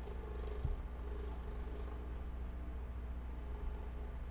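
Steady low hum with faint background noise and no speech, broken once by a soft low thump about two-thirds of a second in.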